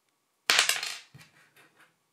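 A small metal projectile dropped down an aluminium tube: a sharp ringing clack about half a second in, then a few light clicks as it drops out onto the desk and settles.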